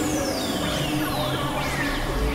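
Experimental electronic synthesizer drone music: several high, thin tones slide slowly downward over a dense, noisy bed of steady low drones.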